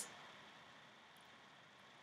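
Near silence: faint, steady room hiss.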